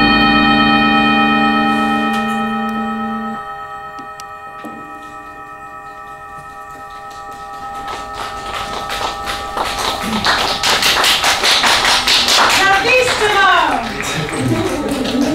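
A folk ensemble's final held chord rings and dies away over several seconds, its lowest notes dropping out first. From about eight seconds in, audience applause builds, with a sliding cheer near the end.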